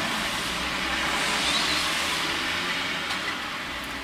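Steady even hiss with a low hum beneath, heard from inside a stationary car's cabin.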